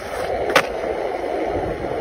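Skateboard wheels rolling over rough pavement, a steady grinding rumble, with one sharp clack from the board about half a second in.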